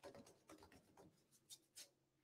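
Near silence with a few faint scratchy strokes of a paintbrush dry-brushing paint onto a painted wrought iron rack.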